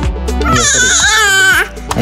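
An infant crying: one high wail lasting about a second, then a short falling cry near the end, over background music with a steady beat.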